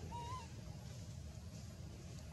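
A baby macaque gives one short, thin coo near the start, rising and then falling in pitch, over faint low background noise.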